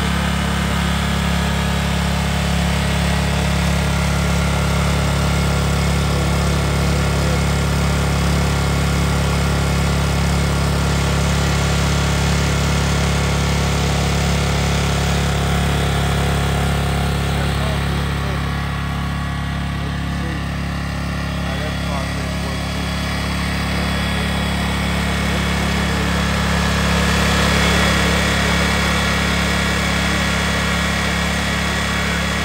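Generac Power Surge 7550 EXL portable generator's engine running steadily at constant speed after a remote-switch start.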